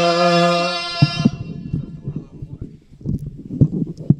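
A man's voice holding one long sung note of an Islamic devotional chant through a handheld microphone, breaking off about a second in. Scattered soft knocks and low thumps follow.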